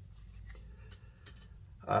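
A few faint clicks and light handling noises from nitrile-gloved hands laying a sheet of 4x5 film on a board, then a man's voice begins with "um" near the end.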